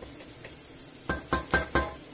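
Onion, garlic and red pepper sizzling softly in olive oil in a stainless steel pot, then about a second in four quick knocks of a wooden spatula against the pot.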